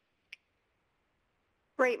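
Near silence broken by one brief, faint click about a third of a second in; a voice starts speaking near the end.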